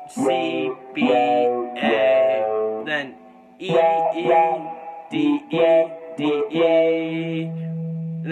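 Electric guitar picking short phrases of chords and notes in a D minor to E7 bridge passage, ending on a low note held for about two seconds.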